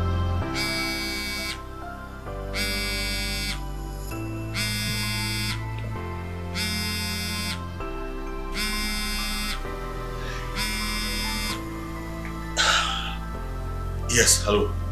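Smartphone ringing for an incoming call with a buzzing tone in regular pulses, about a second on and a second off, six times before it stops when the phone is picked up. Soft background music plays underneath.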